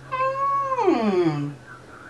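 A woman's single drawn-out, high wordless vocal sound lasting over a second, holding a high pitch and then sliding steeply down.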